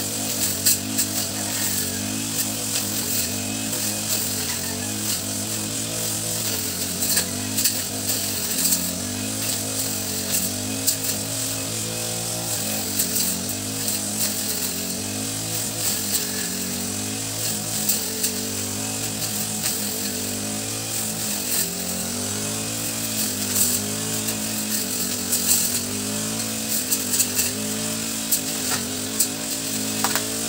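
Small two-stroke engine of a brush cutter (grass trimmer) running steadily, its pitch wavering up and down a little, with scattered sharp ticks.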